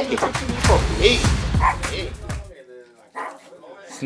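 Voices over background music, which cut off suddenly about two and a half seconds in. After the cut, a small terrier gives short, faint yips near the end.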